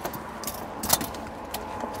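A few light metallic clicks and rattles from a retractable steel tape measure being handled while measuring, the loudest just before a second in.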